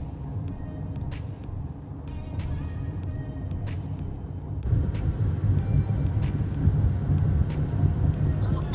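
Road and engine noise of a car driving on a freeway, heard from inside the cabin: a steady low rumble that gets louder a little past halfway. Sharp clicks sound about once a second over it.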